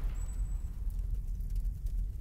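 Low, steady rumble from the tail of the show's closing logo sting.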